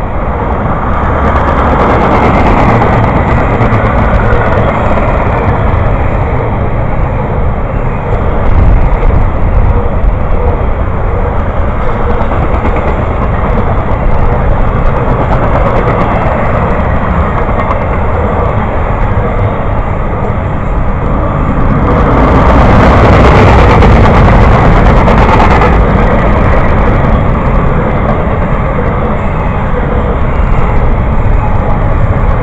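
A train rolling past: a steady, loud rumble and clatter of wheels on rails that swells for a few seconds about three-quarters of the way through.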